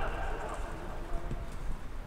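Rugby players calling out to one another across an open pitch, with footsteps of running players on the turf and a low rumble underneath.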